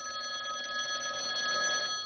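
Telephone ringing with an incoming call: a steady electronic ring sounding several pitches at once, held unbroken for about two seconds.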